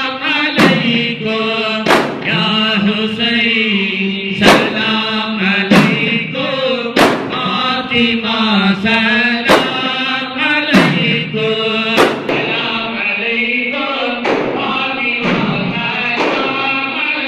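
Men chanting a Sufi ratib in a sustained, melodic line, accompanied by hand-held frame drums (daf) struck together in a slow beat, roughly one stroke every second and a bit.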